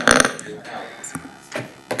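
A short throaty vocal noise at the start, then faint murmuring voices and two soft clicks near the end.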